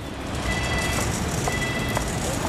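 Audible pedestrian crossing signal beeping while the walk light is green: a high, steady electronic tone about half a second long, repeating once a second, over street noise.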